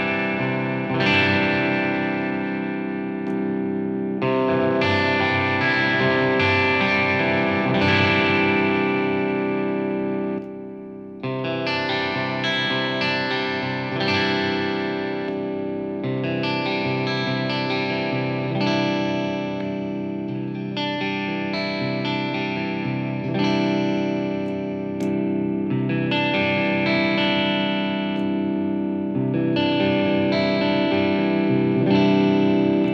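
Jackson Pro Plus Dinky DK Modern seven-string electric guitar with an EverTune bridge and Fishman Fluence pickups, played through the crunch channel of a Marshall JVM410H amp: lightly overdriven chords picked and left ringing, changing every second or two, with a brief break about ten seconds in.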